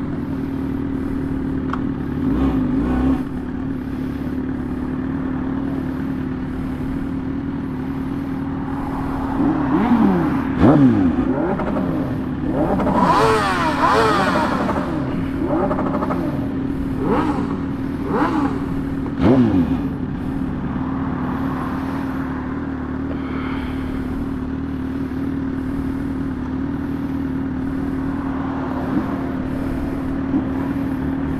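Motorcycle engine holding a steady note at cruising speed. Several other vehicles go by in the middle part, their pitch falling as they pass.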